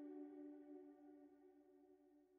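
A soft held chord of ambient background music dying away, fading toward near silence.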